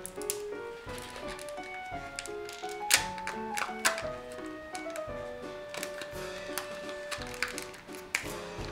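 Background music with a stepping melody, over sharp clicks and crackles as the plastic shell and foil seal of a Kinder Joy egg are peeled and prised open by hand. The loudest crackle comes about three seconds in.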